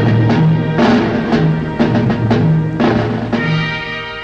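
Orchestral march music from a film score, with drum beats about twice a second under sustained brass and string notes, fading in the last second as the film closes.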